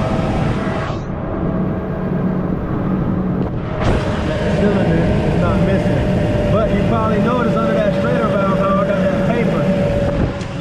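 Ford V8 engine idling steadily, with a constant low hum and a steady mid-pitched whine. The engine is running on a cylinder whose blown-out spark-plug hole has been sealed with JB Weld.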